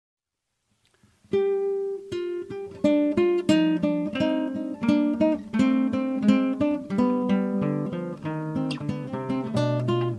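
Intro music on acoustic guitar: plucked, picked notes starting about a second in after a brief silence.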